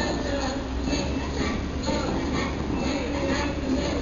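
Steady rushing and splashing of the Bellagio fountain's water jets during a show, with the show's music faintly mixed in.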